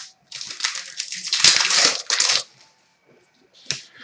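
Trading cards and their plastic and foil packaging being handled on a glass counter: a rustling, crinkling scrape lasting about two seconds, then a single click near the end.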